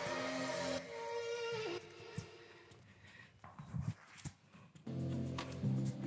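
Background music with sustained chords; it drops low for a few seconds in the middle and comes back about five seconds in.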